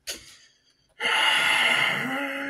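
A person's voice: a short sharp sound at the very start, then a loud, breathy gasp from about a second in that carries on past the end.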